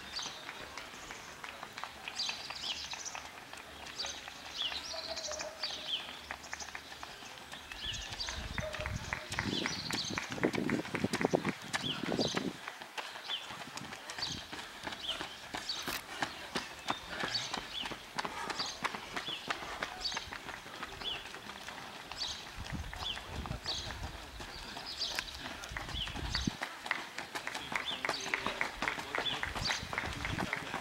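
Runners' footsteps slapping on asphalt as they pass close by, over small birds chirping throughout. Two spells of low rumble come near the middle and near the end.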